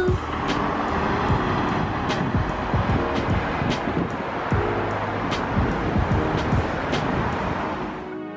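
Road traffic: cars driving past on a busy multi-lane city street, a steady wash of tyre and engine noise, with background music faintly underneath.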